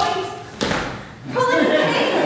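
A single heavy thump about half a second in, dying away briefly in the hall's echo, between stretches of an actor's voice speaking on stage.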